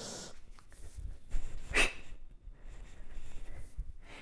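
Short, forceful breaths of a woman working a single kettlebell through a swing clean: one at the start and a sharper one a little under two seconds in. Faint low thuds of the movement come between them.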